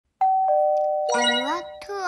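A two-note ding-dong chime, a higher note then a lower one, each held and ringing on. About a second in, a short high-pitched voice with rising pitch comes in, followed by a falling one.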